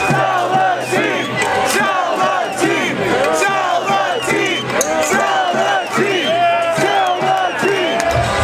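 Large crowd of protesting baseball fans shouting and cheering, many voices at once.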